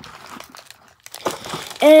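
Soft crinkling of a small clear plastic zip bag full of metal bracelet charms being handled, then a girl's voice starting near the end.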